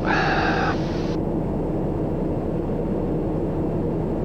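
Steady drone of a Daher TBM 960's turboprop engine and propeller, heard inside the cockpit in cruise flight. A brief steady tone sounds over it in the first second.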